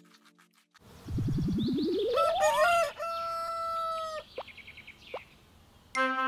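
Cartoon sound effects: a sound rising steadily in pitch runs into a rooster crowing that ends on one long held note, followed by two short chirps.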